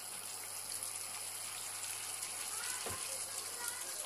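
Chicken and gravy simmering in a pan, a steady soft hiss, with a low steady hum underneath.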